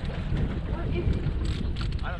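Steady low rumble of a boat's motor running at trolling speed, with wind on the microphone and a few faint clicks in the second half.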